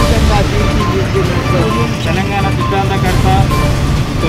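A man speaking, in the manner of a press interview, over background music, with low traffic rumble beneath.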